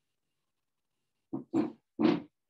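A dog barking: three short barks in quick succession near the end, the last two loudest.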